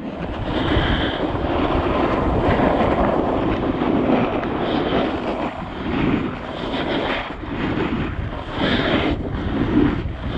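Snowboard edges scraping and hissing over groomed snow, mixed with wind rushing over the microphone. The sound swells and fades with each turn in the second half.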